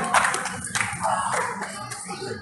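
A group of people clapping their hands, the applause thinning and growing quieter, with some voices mixed in.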